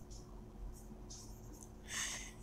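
Faint scratching of a dry-erase marker writing on a whiteboard, with strokes near the start and a longer one near the end, over a low steady hum.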